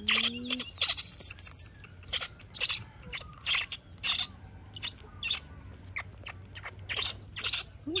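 Disposable diaper crinkling and rustling in quick, irregular bursts as it is handled and fastened on a baby monkey.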